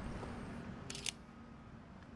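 Camera shutter click: a quick double snap about a second in, over faint outdoor background noise.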